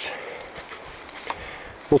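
Footsteps walking along a forest path, a few soft scuffs and crunches underfoot.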